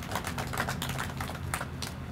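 Scattered hand-clapping from a small crowd at the end of a speech: a quick, irregular patter of separate claps over a low steady hum.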